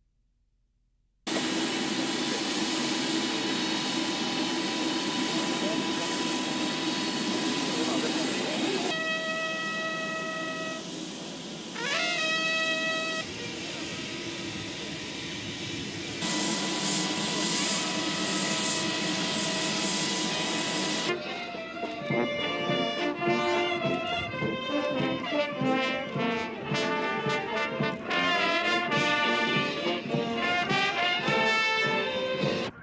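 Loud steady rushing noise with a few held tones, then, about two-thirds of the way in, a military brass band with sousaphones starts playing.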